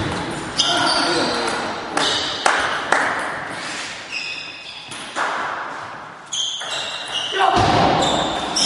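Table tennis balls clicking sharply off bats and tables several times, irregularly spaced, each click ringing briefly in a reverberant sports hall, with voices in the hall.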